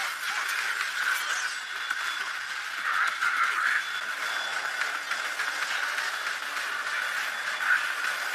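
Sound effects from an anime episode's soundtrack: a steady hissing, crackling noise with scattered faint clicks, and no music or dialogue.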